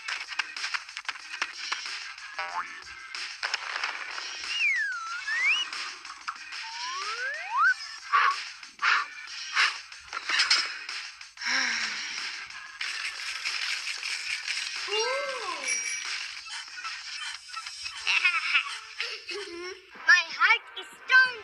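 Cartoon soundtrack of background music with comedic sound effects: whistle-like pitch glides that dip and rise a few seconds in, a boing, and many short clicks and taps.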